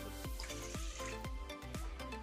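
Water pouring from a drinking glass into milk in a stainless steel bowl, splashing near the start, over soft background music with a steady beat.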